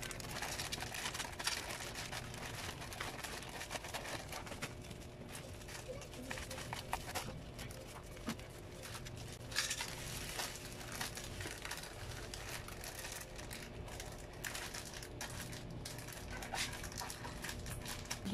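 Plastic courier pouch and bubble wrap crinkling and rustling as a parcel is opened and unwrapped by hand: a continuous run of irregular crackles with a few louder bursts.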